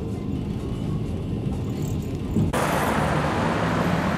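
Steady low rumble of the Rossiya passenger train running, heard from inside the carriage. About two and a half seconds in it cuts off suddenly and is replaced by the hiss of city road traffic.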